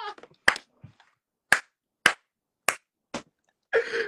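Five sharp hand claps, spaced unevenly about half a second to a second apart, amid laughter.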